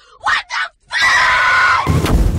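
A woman screaming: a couple of short cries, then one long high-pitched scream held from about a second in. Right at the end a sudden loud, low blast cuts in over it.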